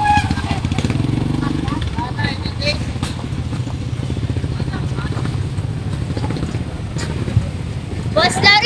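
Small motorcycle and scooter engines running at low speed, a steady pulsing drone that is heaviest in the first couple of seconds and then eases off. Faint street chatter runs underneath.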